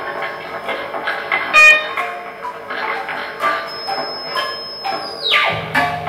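Free-improvised experimental music: guitar notes over electronically processed metal objects, with a loud bright ringing struck note about one and a half seconds in. Near the end a thin high held tone swoops steeply down in pitch and a low drone comes in.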